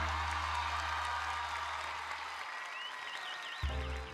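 Audience applause fading away after a choral carnival song, with a wavering high tone near the end and new music with a deep bass line cutting in at about three and a half seconds.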